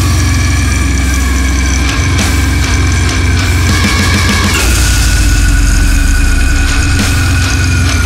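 Down-tuned djent metal: heavily distorted extended-range electric guitar with drums, a dense low rumble under long held higher notes. The held chord shifts to a new pitch a little past halfway through.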